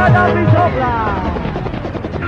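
Early-1990s rave music from a DJ set, taped: a thick synth sound glides steadily downward in pitch as the bass drops out about half a second in.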